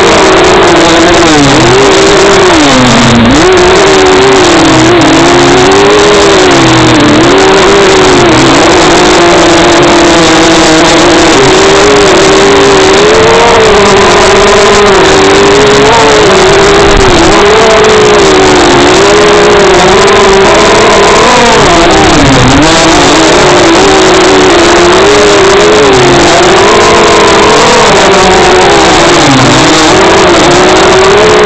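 Small high-revving motor of a radio-controlled car heard from a camera riding on it, its pitch rising and falling continually as the throttle is worked, over a steady rushing noise from the ride across rough grass. Very loud throughout.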